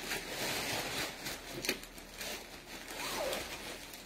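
Soft rustling of a fabric garment being picked up and handled, with a few light clicks.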